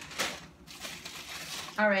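Plastic-wrapped frozen food being handled, with a short burst of crinkling about a quarter second in and softer rustling after it.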